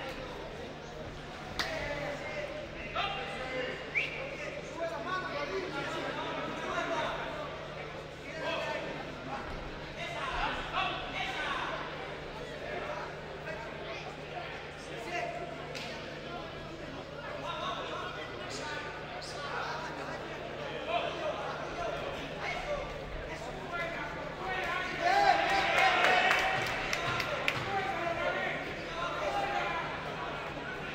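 Spectators and corner men shouting during an amateur boxing bout in a large echoing hall, with occasional sharp thuds from the ring. The shouting swells loudest about 25 seconds in.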